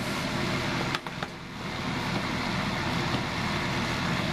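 Patton HF-50 electric fan heater's fan running steadily. A click about a second in as the control knob is turned from fan to low heat; the sound drops briefly, then builds back up.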